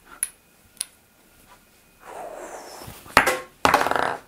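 Two light clicks from a small white ball being handled in the hand, then shuffling movement and a loud rattling clatter near the end.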